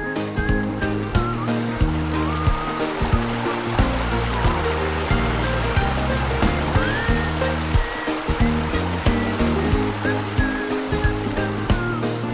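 Instrumental break of a country-pop song: a steady beat and bass under guitar, with short sliding notes high up.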